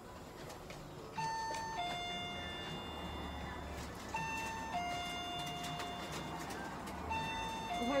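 Electronic two-note ding-dong chime, a higher note falling to a lower one, sounding three times about three seconds apart.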